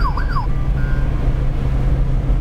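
A car's engine and road noise heard inside the cabin as it drives along, a steady low drone. In the first half second a siren-like tone warbles rapidly up and down, about four times a second, then breaks off.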